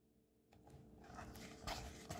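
Near silence for about a second, then faint rustling and handling of a paperback book's pages as the page starts to be turned.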